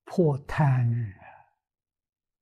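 An elderly man's voice: a short 'ừ' followed by a longer, sigh-like vocal sound, both falling in pitch, ending about a second and a half in.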